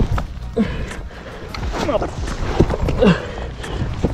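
A man grunting and breathing hard with effort as he scrambles up a steep, muddy creek bank in waders, with a string of short scuffs and footfalls on the mud. Several short strained grunts drop in pitch.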